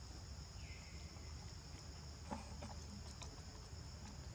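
Steady high-pitched insect drone, over a low rumble. A short falling chirp comes about half a second in, and a single sharp click a little past halfway.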